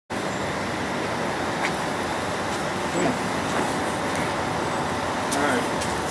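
Steady outdoor background noise, a constant hiss and rumble, with faint voices briefly about halfway through and again near the end.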